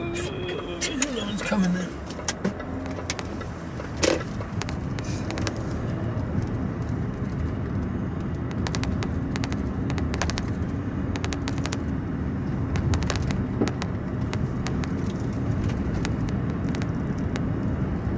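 A road vehicle driving along, heard from inside the cabin as a steady low engine and road noise. A single sharp knock sounds about four seconds in.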